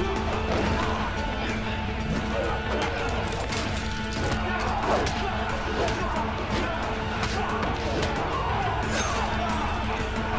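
Action-film music score with held tones under a fist fight: scattered punches and body impacts, with grunts, the sharpest hits about three and a half, five and nine seconds in.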